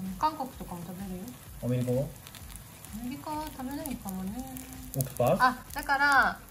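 Casual Japanese conversation in short spoken phrases, over the faint sizzle of takoyaki frying in oil in a takoyaki pan.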